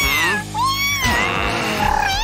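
Cartoon background music under high, cat-like vocal calls from an animated character: a short falling call, then a rising one, then a longer, breathier sound in the second half.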